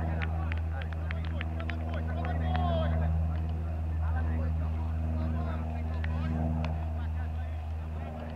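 A steady low engine hum runs throughout, with faint distant voices and short clicks over it.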